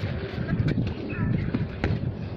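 A football kicked barefoot: two sharp knocks about a second apart, over a low rumble on the phone microphone, with brief faint voices.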